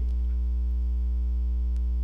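Steady electrical mains hum: a constant low buzz with a stack of evenly spaced overtones, unchanging throughout.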